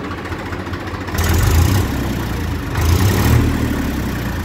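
Massey Ferguson 241 DI Eagle tractor's three-cylinder diesel engine running at idle and revved twice, about a second in and again near the three-second mark, showing off its throttle pickup.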